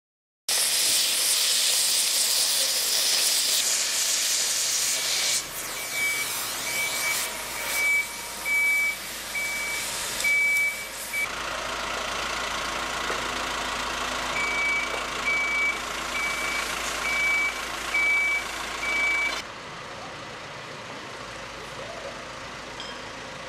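A cutting torch hisses loudly through steel rail for the first few seconds. A construction machine's reversing alarm then beeps steadily at one pitch, a little over once a second, over a running diesel engine and street noise, stopping for a few seconds midway and then starting again.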